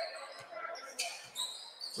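Faint basketball gym ambience: scattered crowd chatter, with a brief sharp sound about a second in.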